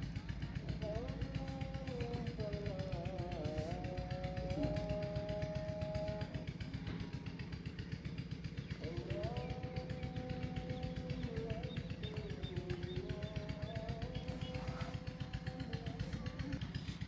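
A small engine running steadily nearby, a low even rumble with a fast pulse, while faint held and gliding tones drift in from a distance.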